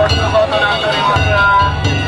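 Danjiri festival music of beaten drum and metal gongs, with the crowd's voices shouting over it. The drum comes in uneven runs of low beats, and sharp metallic strikes cut through.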